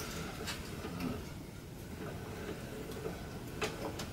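Hand-cranked pasta machine being turned as a sheet of egg dough passes through its rollers, with soft mechanical ticking from the crank and gears and a sharper click about half a second in and again near the end.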